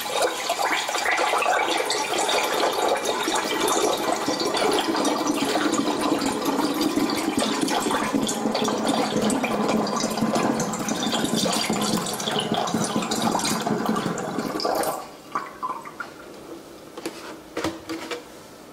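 Apple juice poured in a steady stream into a glass fermenting jug, splashing into the foaming liquid. The pour stops suddenly about fifteen seconds in, and a few faint clicks follow.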